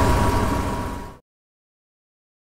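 An RV's onboard generator running with a steady hum and a thin whine, fading out about a second in to dead silence.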